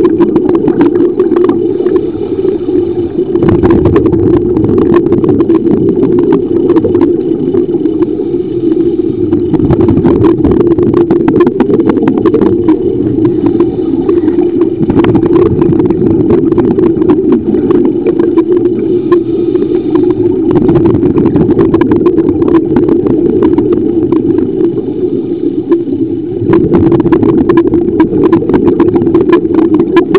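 Underwater sound recorded by a scuba diving camera: a loud, steady low drone with irregular crackling and bubbling from divers' regulators exhaling bubbles.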